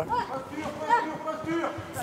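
People's voices talking, quieter than the commentary on either side.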